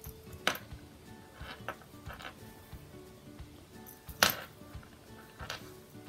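Quiet background music under a few brief clicks and rustles of hand-sewing, a needle and thread being pulled through cotton fabric; the sharpest comes about four seconds in.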